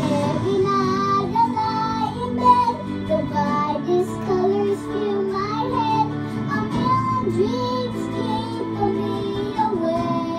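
A young boy singing a slow ballad melody into a handheld microphone over a recorded instrumental backing track.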